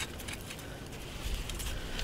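Faint, scattered metallic clinks of a steel 220 Conibear body-grip trap and its chain being handled, over a low rumble.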